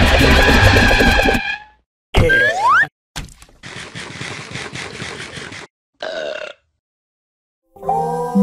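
Cartoon soundtrack: beat-driven background music that cuts off about a second and a half in, then a short rising whistle-like sound effect, followed by a few seconds of noisy sound effect and a brief final sound.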